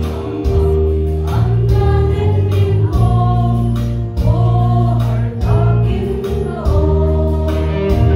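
A women's vocal group singing a gospel hymn in Mizo together, over instrumental accompaniment with sustained low bass notes.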